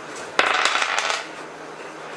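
Dice clattering onto a tabletop: a sudden flurry of small hard clicks about half a second in, dying away within a second.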